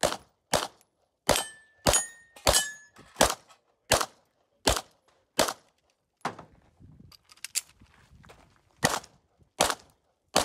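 Sig P320 X-Five pistol fired in a quick string of nine shots, roughly one every half to three-quarters of a second, with a thin metallic ring after a few of them about two seconds in. After a pause of about three seconds with only faint clicks, two more shots come near the end.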